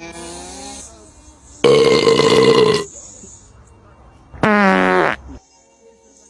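Red rubber squeeze toy squeezed three times, giving buzzy, pitched honks: a short one at the start, a loud longer one about two seconds in, and a shorter one near the end.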